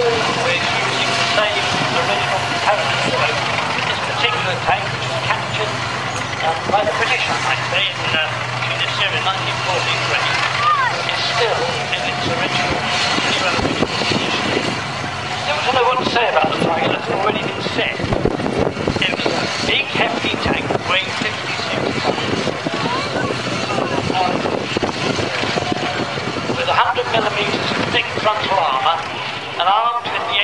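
Tiger I tank's Maybach V12 petrol engine running as the tank drives around the arena, with a steady low drone over the first half that gives way to rougher, uneven engine and track noise. Crowd voices chatter over it.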